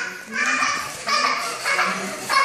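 A young child's high-pitched voice in about three short, excited bursts of playful vocalising.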